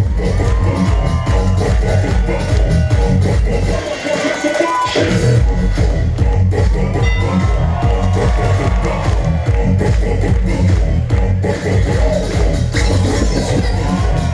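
Loud electronic dance music played for a cheerleading routine, with a heavy beat; the bass drops out for about a second around four seconds in, then comes back.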